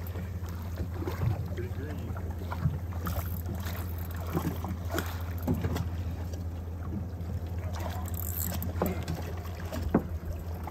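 Steady low hum beside a flats skiff, with scattered small splashes and knocks of water at the hull as a hooked tarpon swirls alongside the boat.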